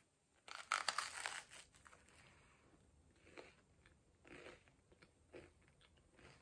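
A crunchy bite into a slice of peanut-butter toast, loudest about half a second in, followed by softer chewing sounds about once a second.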